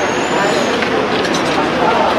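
Busy roadside ambience: several people talking over one another, with steady traffic noise underneath.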